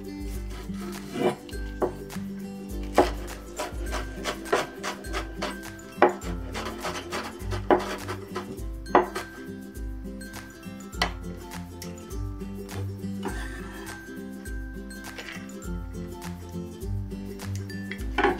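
A cleaver striking a wooden cutting board as green onions are minced, in single, irregularly spaced knocks that thin out after the first ten seconds or so, over steady background music.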